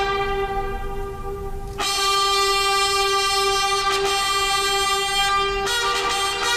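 Brass band playing long held chords, one steady note running throughout, with new chords entering about two seconds in and again near the end.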